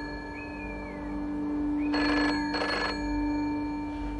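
Old British telephone bell giving one double ring, ring-ring, about two seconds in, over a steady low hum.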